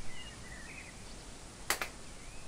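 Faint bird chirps over quiet room tone, then two sharp clicks in quick succession about three-quarters of the way in.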